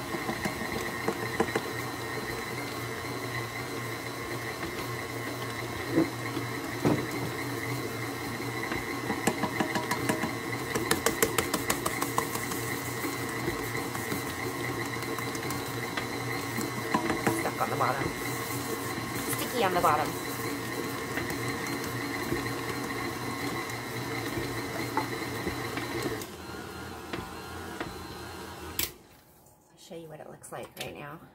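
KitchenAid tilt-head stand mixer running steadily, its dough hook kneading pizza dough in the steel bowl, with a few bursts of quick clicking along the way. The motor hum shifts a little near the end and then stops.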